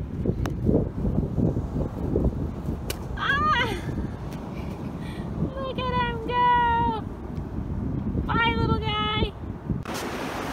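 Wind buffeting the microphone in uneven low rumbling gusts. Three short high-pitched wordless calls sound over it, about three, six and eight and a half seconds in.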